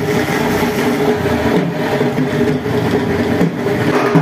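Diesel tractor engine running steadily, a low rumble under a dense, even din.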